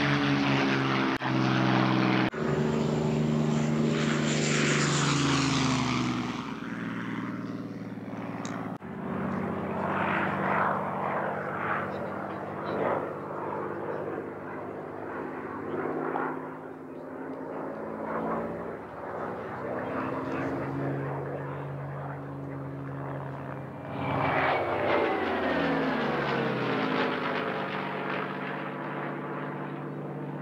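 Propeller-driven fighters, a Supermarine Spitfire and a Messerschmitt 109, making passes overhead: a V12 piston-engine drone that falls in pitch as each plane goes by. It is loudest in the first few seconds and again about 24 seconds in, fainter and more distant between.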